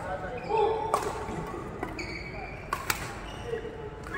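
Sharp cracks of badminton rackets hitting a shuttlecock: one about a second in and two close together near three seconds.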